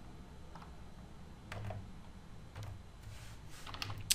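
Faint computer keyboard typing as a command is entered: scattered keystrokes, coming quicker near the end.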